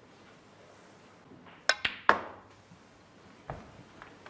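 Snooker cue tip striking the cue ball, followed quickly by sharp clicks of balls colliding, about halfway through; a single softer ball click near the end.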